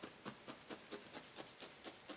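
Hand-held felting needle tool stabbing repeatedly into layered wool batts: faint, even soft punches at about four to five a second, tacking the base layer smooth and attached onto the wool core.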